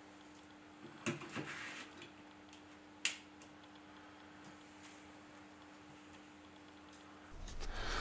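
Li-ion battery pack of a Godox AD300Pro flash being handled in its slot: a short run of sliding and clicking about a second in, then one sharp click about three seconds in as the battery latches.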